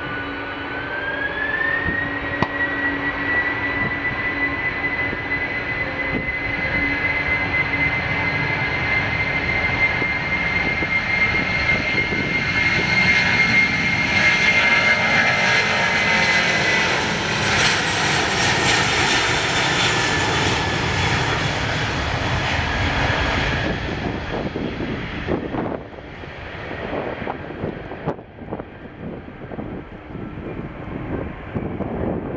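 An ANA Boeing 767-300 at takeoff thrust: its twin turbofan engines spool up with a whine that rises in pitch over the first couple of seconds and then holds steady. The engine noise grows louder as the jet accelerates past on its takeoff roll, then drops away in the last few seconds as it moves off and lifts off.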